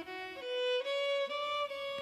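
Solo fiddle playing a slow melody of a few long held notes as background music.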